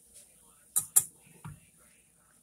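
Metal wire whisk knocking against a saucepan: two sharp clinks close together about a second in, then a softer knock.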